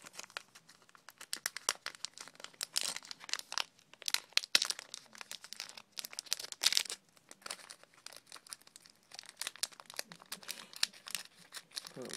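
Foil wrapper of a Pokémon trading-card booster pack crinkling in the hands as it is torn open, in irregular crackles with louder bursts around three and seven seconds in.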